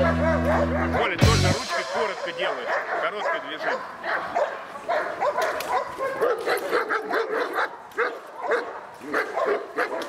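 A Belgian Malinois barks and yips over and over in short, quick calls during protection work. Background music stops about a second in.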